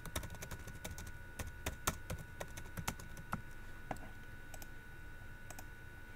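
Keystrokes on a computer keyboard typing a short phrase: quick, irregular clicks, dense for about four seconds, then only a few scattered ones.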